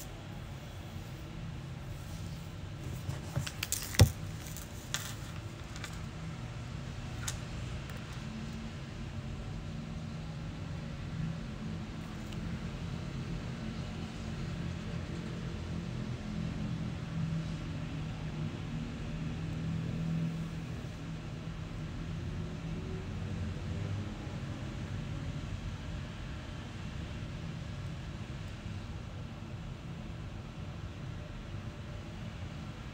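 A steady low background hum, with a cluster of sharp clicks and taps from a smartphone being handled a few seconds in, the loudest about four seconds in, and one more a few seconds later.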